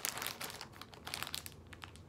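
Thin clear plastic bag crinkling as it is handled, a dense flurry of crackles over the first second that thins to scattered crinkles.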